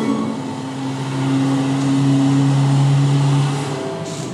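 Film-clip soundtrack playing from a classroom display's speakers: a steady low drone on two held pitches that sets in about a second in and falls away near the end.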